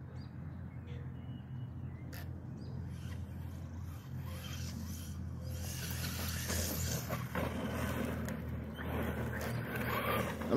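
Electric RC monster truck with a brushless motor, running on a 2S battery, driving at a distance across grass. It grows louder from about the middle on as it comes nearer and onto the gravel path, over a steady low hum.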